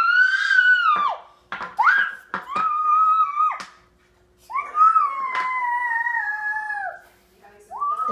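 A toddler's high-pitched, drawn-out vocalizing: three long held calls rather than words, the last lasting about two seconds and slowly falling in pitch. A couple of light clicks sound between the calls.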